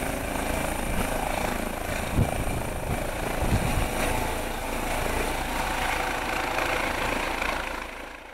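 Eurocopter EC135 air-ambulance helicopter lifting off and climbing away, with a steady rotor and turbine noise that fades near the end as it flies off.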